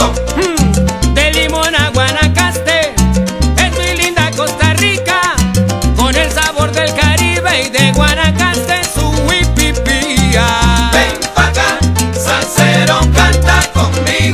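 Salsa band playing an instrumental passage between sung verses. A syncopated bass line runs under a lead melody with sliding, bending notes.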